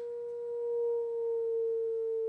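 A steady pure sine tone of about 475 hertz from a phone tone-generator app, played through a speaker into a gas-filled Rubens tube where it resonates. The pitch slides slowly lower as the frequency is turned down.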